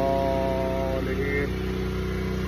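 An engine idling steadily in the background, a constant low hum with an even ticking, under a man's long drawn-out "uhh" that fills about the first second.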